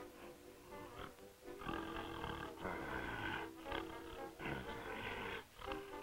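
Cartoon soundtrack music with a comic lion sound effect coming in twice, in two noisy stretches near the middle and toward the end.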